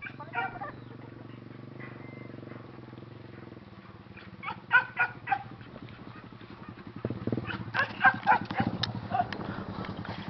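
Short, sharp animal calls in two bouts, one about halfway through and a busier one near the end, over a steady low hum.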